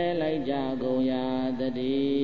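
A monk's voice chanting a Buddhist recitation in long, held notes that step from pitch to pitch.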